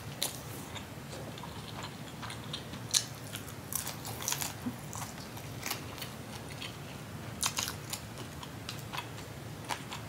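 A person chewing a mouthful of lemon ricotta pancake with lips closed, close to the microphone: irregular small mouth clicks and smacks, the loudest about three seconds in.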